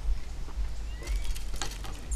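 Footsteps on a wooden deck, then a few light knocks and clicks near the end as arrows are handled in a metal ground quiver, over a steady low rumble of wind on the microphone.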